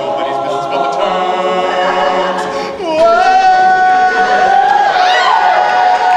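All-male a cappella group singing held wordless chords. About three seconds in, one voice comes in loud on a long sustained high note while the other parts slide up and down beneath it.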